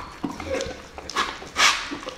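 Large wrinkled mastiff-type dog eating wet food from a plate: chewing and lip-smacking with short wet clicks, then two louder slurping, snuffling bursts in the second half.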